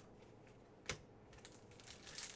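Near silence broken by light handling of trading cards: one sharp click a little before the middle, then a few faint ticks.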